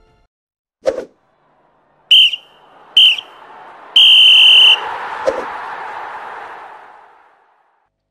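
Referee's whistle blown three times, two short blasts then one long one, the pattern that signals the end of a football half or match. The blasts sit over a broad rush of noise that dies away over a few seconds, after a single thump about a second in.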